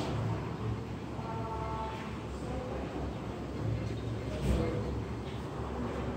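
Steady low hum of room ambience, with faint distant voices.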